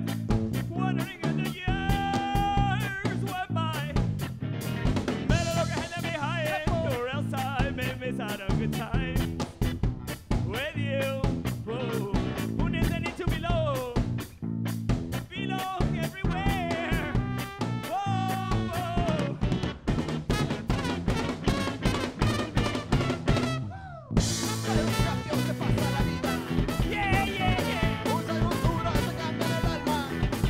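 Live band playing amplified through a PA: drum kit, electric guitar, bass guitar and trumpet on a fast, steady beat. The music drops out briefly about three-quarters of the way through, then the full band comes back in with a cymbal crash.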